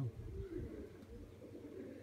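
Domestic pigeons cooing faintly: a soft, low coo in the first half-second, then only a weak low background.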